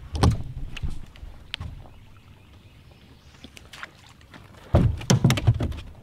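Knocks and thumps on the deck of a bass boat: a short group at the start, then a louder run of them near the end.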